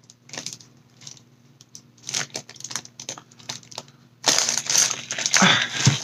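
Packaging crinkling and rustling as a parcel of molds is handled and unwrapped: light scattered rustles and clicks at first, then a louder, continuous crinkling from about four seconds in.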